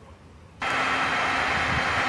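Heat gun running: a steady blowing hiss with a faint hum, starting suddenly about half a second in.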